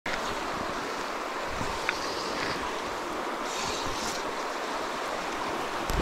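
Steady rushing of a shallow river flowing over a stony riffle, with a single brief click about two seconds in.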